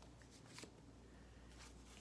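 Near silence: room tone with a low steady hum, and a faint click or two of paper being handled.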